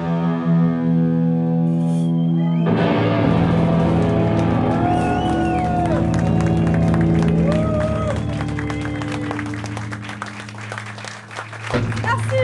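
Live rock band playing loud, long held chords on distorted electric guitar with drums, shifting to a new chord about a third of the way in, with high gliding tones wavering over it. The sound thins out near the end.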